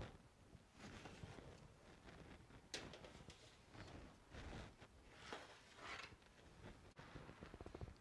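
Near silence with faint clicks and scrapes of metal baking sheets being slid onto oven racks, one sharper click about three seconds in.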